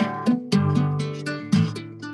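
Acoustic guitar fingerpicked: a run of single plucked notes and chords, each ringing out and fading before the next, several a second.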